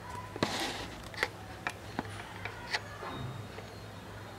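Handling noise from the recording device as it is moved in toward the screen: a brief rustle about half a second in, then about five light clicks and taps at uneven intervals, over a faint steady hum.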